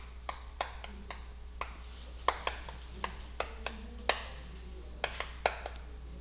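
Chalk writing on a chalkboard: a string of irregular sharp taps as each stroke of the characters is struck onto the board.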